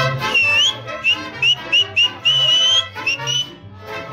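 Live mariachi music between trumpet phrases: a high, thin melody of short sliding notes, with one longer rising note in the middle, plays over the strummed guitars and a low bass line.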